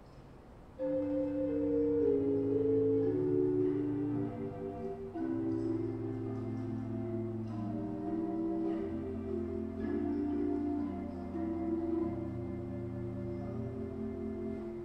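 Pipe organ's 8-foot Gedeckt, a stopped-flute stop, played in slow sustained chords with the tremulant on, pulsing the tone; each note has a little bit of attack. The playing starts about a second in.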